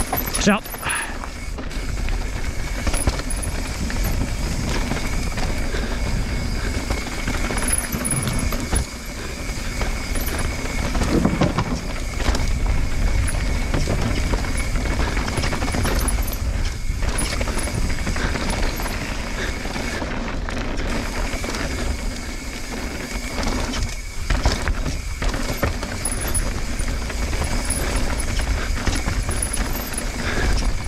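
Mountain bike descending a dirt and rock downhill trail, recorded from the rider's helmet camera: a continuous rush of tyre noise on dirt and wind on the camera microphone, with deep rumble and clatter from the bike over bumps. A faint steady high tone runs under it, and the level drops briefly a few times.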